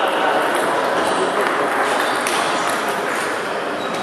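Table tennis rally: the ball ticks sharply off the bats and the table, about two hits a second, over the steady din of a sports hall.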